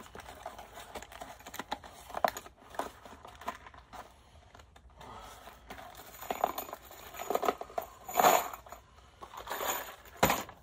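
Rustling and light clicking of small things being handled, in irregular bursts, with louder rustles about eight and nine and a half seconds in.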